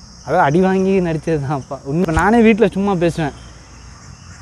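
Steady, high-pitched chirring of insects, heard under a man's animated talking.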